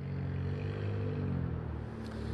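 Steady low rumble of road traffic with a low engine hum, rising in level over the first moment.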